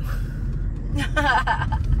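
Steady low rumble of a car heard from inside the cabin. A voice breaks in for under a second about a second in.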